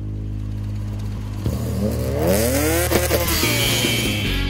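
A racing car's engine rising steeply in pitch as it accelerates past, peaking about three seconds in and then dropping away as it goes by, over a steady low musical drone.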